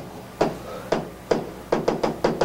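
Pen or stylus tapping on a tablet-like writing surface while a word is handwritten: about six sharp, irregular taps, coming quicker toward the end.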